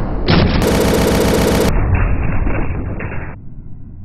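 Gunfire sound effect, rapid machine-gun-style shots in several spliced clips that cut in and out abruptly, stopping about three-quarters of the way through.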